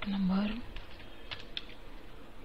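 A brief voice sound at the start, then a few separate clicks of computer keyboard keys about a second in as a short number is typed.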